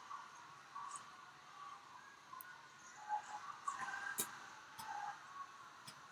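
Faint gymnasium ambience: distant, indistinct voices and a few sharp clicks, the loudest about four seconds in.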